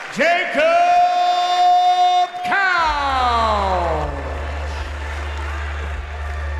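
A ring announcer's amplified voice draws out a call, holding one long note for about two seconds. Then a pitched sweep falls steadily over the next two seconds, with a low hum coming in underneath.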